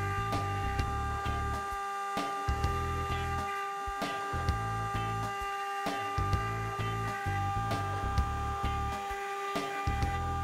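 Background music with a steady beat and a repeating bass line. Under it runs a steady high whine from a CNC router spindle engraving wood.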